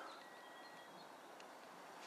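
Near silence: faint outdoor ambience, with a thin, faint whistled note held for under a second near the start.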